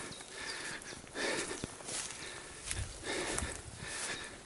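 Someone walking through dense shrubs and tall grass: irregular rustling and swishing as stems brush past, with soft footsteps and a few small snaps.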